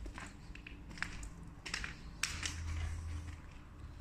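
Footsteps crunching on grit and debris on a concrete floor, a step roughly every second.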